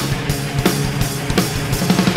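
Live rock band playing an instrumental passage: drums striking a steady beat about three times a second over electric guitars and bass.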